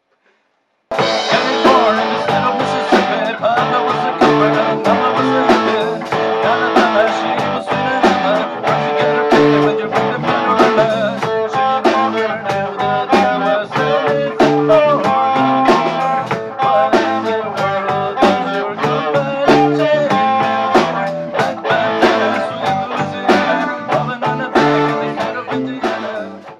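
A rock band playing: electric guitar, bass guitar, drum kit and keyboard. The music starts suddenly about a second in and stops right at the end.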